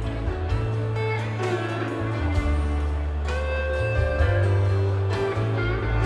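Live rock band playing: guitar lines over sustained bass notes and drums.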